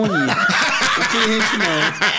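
Men chuckling and laughing, with a few spoken syllables mixed in.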